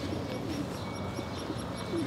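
Quiet outdoor city background: a low steady hum with faint bird calls.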